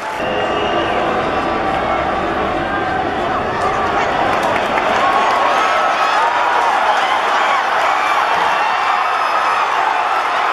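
Football stadium crowd cheering, a dense roar of many voices that grows a little louder about halfway through.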